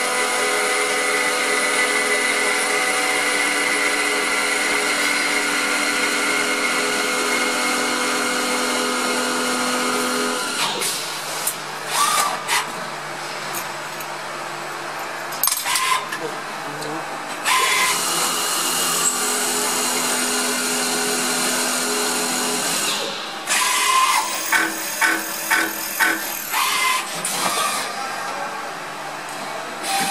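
CXK32-series CNC lathe machining a screwdriver bit. Its motor gives a steady multi-tone whine for about the first ten seconds, then a stretch of hissing noise with a few clicks. The whine returns, and near the end comes a run of short, evenly spaced pulses about two a second.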